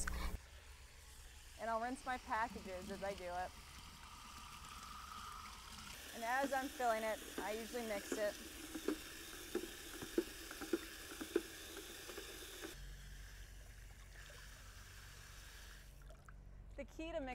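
Faint hiss of water from a garden hose spray nozzle running into a plastic bucket, turned on at low pressure, with a voice speaking briefly twice over it.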